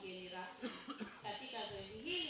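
Speech: a woman talking into a handheld microphone through the PA, reading from prepared notes, with a short rough, noisy burst in her voice about half a second in.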